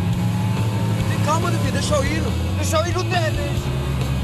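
A car's engine running low and steady, with voices calling out over it from about a second in.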